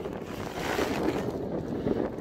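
Wind rumbling on the microphone over the wash of sea surf, with a hiss that swells and fades in the first second.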